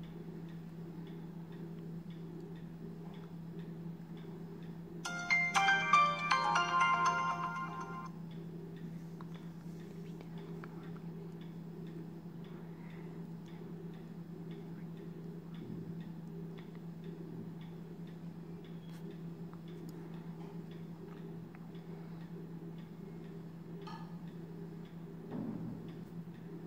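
Kospet Hope smartwatch's short electronic startup jingle, a few seconds of bright melodic tones about five seconds in, as the watch boots up. Under it, a steady low hum and a faint regular ticking about once a second.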